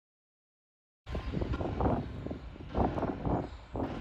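Silence, then about a second in, outdoor background noise begins abruptly: a steady low rumble with uneven swells, like traffic and wind on a handheld microphone.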